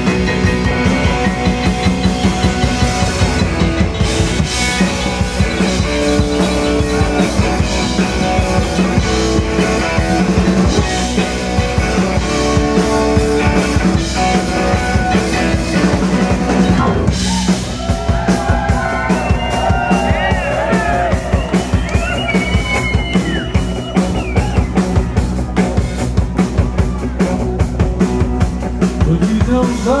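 Live rock band playing an instrumental break with a steady drum beat, bass, electric guitar and piano chords. A little past halfway a lead line with bending notes rises out of the band, and the singing comes back in at the very end.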